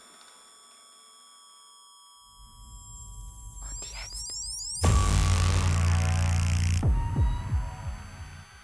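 Horror-trailer sound design: a hushed pause with faint high steady tones, then a low rumble swelling from about two seconds in. Near the middle a loud, deep drone hits with a hiss on top, holds about two seconds, and gives way to falling pitch sweeps.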